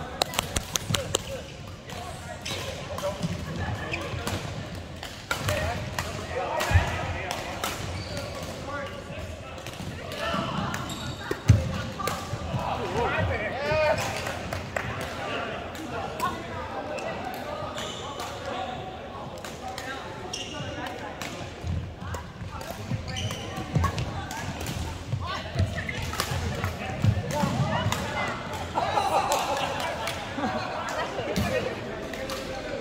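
Badminton rackets striking the shuttlecock during a rally: sharp hits at irregular intervals, a quick cluster of them about a second in, with voices and play from other courts around them in a large hall.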